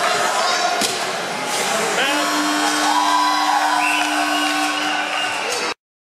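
Ice hockey play on a rink: sharp knocks of sticks, puck and boards, with voices calling over them and a long held tone in the middle, cutting off suddenly near the end.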